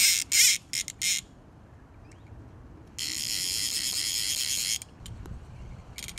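Direct-drive fly reel's ratchet buzzing as a hooked carp pulls line off the released spool: a few short bursts in the first second, then a steady buzz lasting nearly two seconds from about three seconds in.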